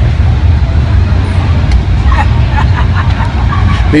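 A loud, steady low rumble with faint voices in the background.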